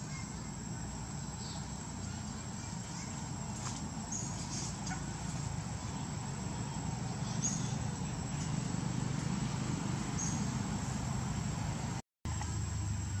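Outdoor forest ambience: a steady low rumble under a thin, continuous high insect-like whine, with three or four brief high chirps spread through it.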